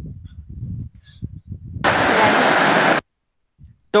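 Low, uneven rumbling noise on a voice-call microphone, then a loud burst of hiss lasting about a second that starts and cuts off sharply.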